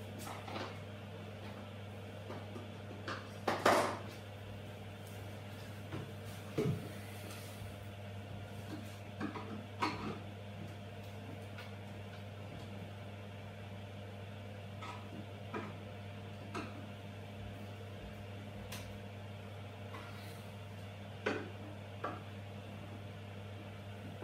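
Scattered light knocks and clicks of hand work on white kitchen wall cabinets, a screwdriver turning the screws that level them, the loudest knock about four seconds in. A steady low hum runs underneath.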